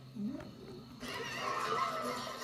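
Soundtracks of several Toon Disney logo videos playing over one another from a computer: a short low sound that bends up and down near the start, then about a second in a dense jumble of overlapping pitched sounds.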